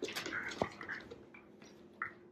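A Shiba Inu puppy and an adult Shiba play-wrestling: scuffling and short dog vocal sounds through the first second, with a sharp knock just past halfway through it. It then goes quieter until a brief sound at the end.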